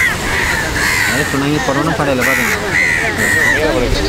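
Crows cawing repeatedly, a run of short harsh caws following one after another, over people talking.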